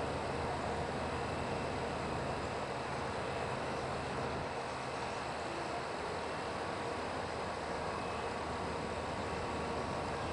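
Steady outdoor background noise: an even, continuous rushing hum with no distinct events.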